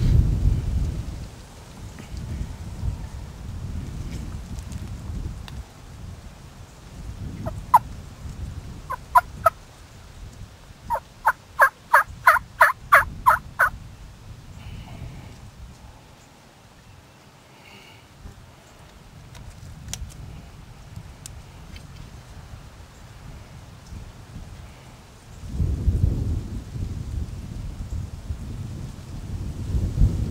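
Turkey yelps: a single yelp, then a pair, then a run of about eleven yelps at roughly four a second, in spring turkey calling. A low wind rumble on the microphone swells near the start and again near the end.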